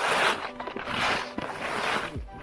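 Skis scraping through soft snow on a mogul run: a hiss with each turn, twice about a second apart. Background music plays underneath.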